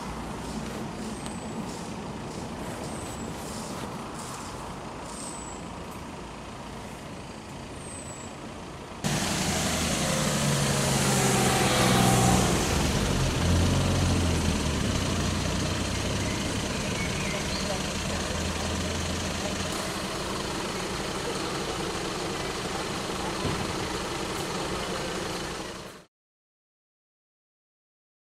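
Outdoor traffic ambience with a few short high chirps. About nine seconds in, a sudden cut brings a louder heavy vehicle engine running close by; its pitch shifts for several seconds, then settles into a steady run.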